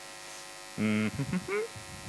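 Steady electrical mains hum from the hall's microphone and PA system. About a second in, a man's voice comes briefly over the microphone with a short hesitant sound.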